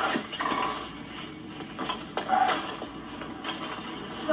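Racing bicycle being wheeled and parked, with a few sharp mechanical clicks and rattles from the bike, and short wordless vocal sounds from a person.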